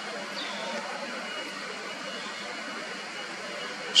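Steady outdoor background noise, an even hiss with no distinct events, and a brief faint chirp about half a second in.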